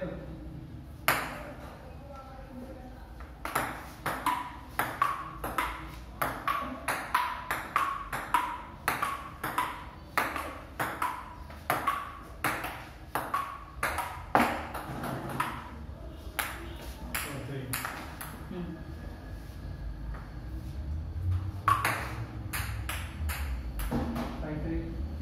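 Table tennis rally: the ball clicking back and forth off paddles and a wooden tabletop, about two to three hits a second, each with a short ring. The rally stops about two-thirds of the way through, and a few more bounces come near the end.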